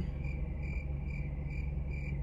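Short, high-pitched chirping beeps repeating evenly about three times a second over a steady low hum.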